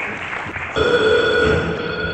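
Crowd applause tailing off, then about three-quarters of a second in a steady electronic synthesizer tone of several pitches starts abruptly: the opening of the next song of a live electro-industrial set on a rough tape recording.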